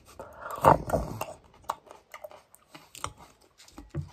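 A man biting a forkful of salad with a cherry tomato, with one loud, rough mouth noise about half a second in, followed by a few faint chewing clicks.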